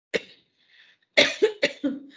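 A woman coughing: one short cough, then a quick run of about four coughs.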